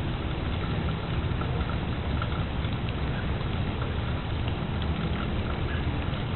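Steady rain pattering, with scattered faint drop ticks over an even hiss and a low rumble underneath.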